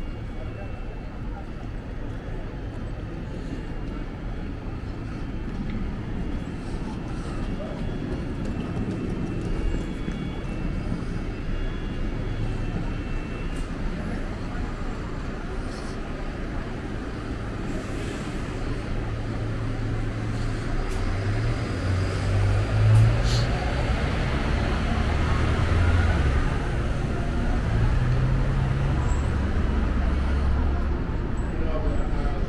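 Busy city street ambience: steady traffic noise with indistinct voices of passers-by. In the second half a low traffic rumble swells, as a bus or other heavy vehicle passes close by, and is loudest a little past the middle.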